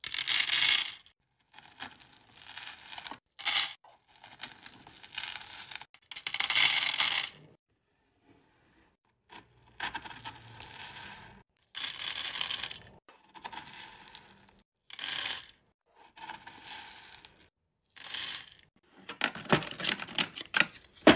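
Hard wax beads rattling and clattering as a metal scoop digs into a drawer of them and pours them into a metal wax-warmer pot. The sound comes in a run of separate bursts with short pauses between, with the loudest bursts at the start and around six to seven seconds in.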